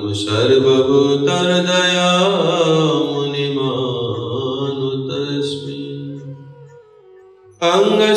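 A man chanting Sanskrit invocation prayers, one long drawn-out melodic phrase that fades out about seven seconds in; the next phrase begins just before the end.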